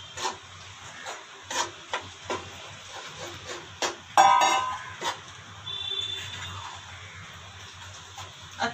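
A steel spoon scrapes and knocks irregularly against an aluminium kadhai while stirring a dry, crumbly mix of powdered sugar, sesame and groundnut. About four seconds in there is a brief, loud, high pitched tone.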